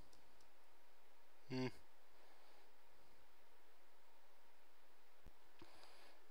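Faint steady room hiss, broken about a second and a half in by one short, low hummed 'hm' from a man.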